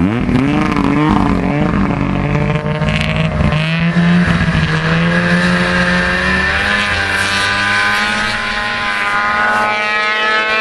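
Snowmobile engine revving as the sled pulls away through deep snow: its pitch wavers up and down at first, then holds steady, and its low end fades after about six seconds as it moves off.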